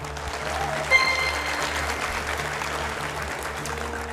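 Studio audience applauding a correct answer over a steady background music bed, with a short high electronic tone about a second in.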